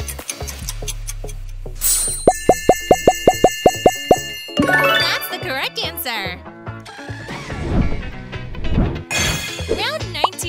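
Cartoon quiz background music with game sound effects: a quick run of about ten short pops about two seconds in, as the ten memory tiles flip over to show characters, followed by bouncy music with sliding tones and voice-like sounds.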